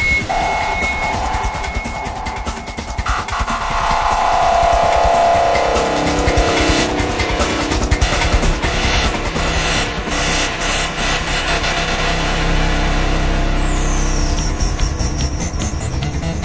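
Psytrance electronic music over a steady low bass. A few seconds in, a synth tone glides downward. Later a high synth sweep rises and falls back near the end.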